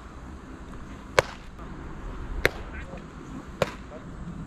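A baseball popping into the catcher's leather mitt three times, sharp single smacks about a second and a quarter apart, as successive pitches are caught without a swing.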